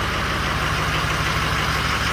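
Ford Super Duty truck's diesel engine idling steadily, running normally a little while after a cold start, with the suspected low-fuel-pressure fault not showing.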